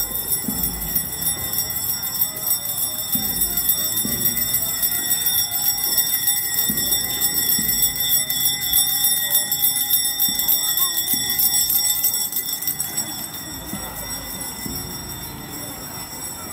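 Small brass handbell shaken continuously in a fast, steady ringing. It grows fainter after about twelve seconds as it moves away.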